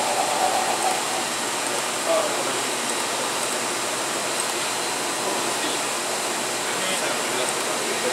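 Steady rushing machine noise, with no rhythm or strokes, typical of the electron microscope's vacuum pump running while the sample chamber is pumped down.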